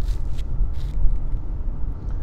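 Steady low rumble of engine and tyre noise heard inside the cabin of a Nissan sedan driving along a road.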